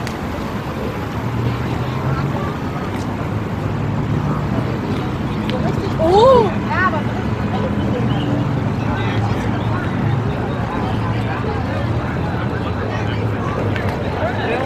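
Busy street crowd: a babble of passersby's voices over a steady rumble of traffic. About halfway through, one person gives a brief loud exclamation that rises and falls in pitch.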